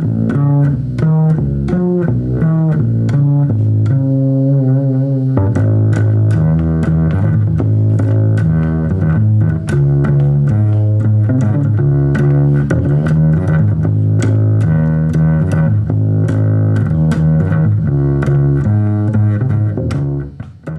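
Five-string acoustic upright bass with a low B string, strung with D'Addario Helicore Hybrid strings, played as a continuous run of low notes with clear attacks and long sustain.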